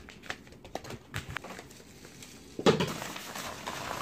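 Padded paper mailer envelopes being handled and opened: small paper taps and clicks, then a louder crinkling rustle starting about two-thirds of the way through.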